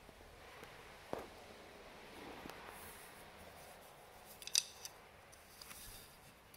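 Faint handling sounds of weaving on a rigid heddle loom: yarn rustling and rubbing against the warp threads, with a few light clicks, the sharpest about four and a half seconds in.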